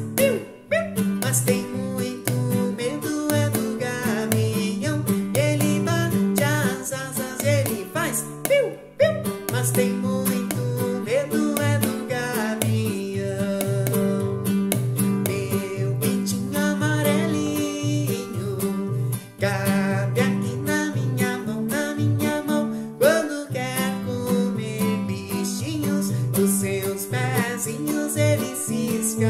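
Nylon-string classical guitar strummed in a regular rhythm, with a man singing over it at times.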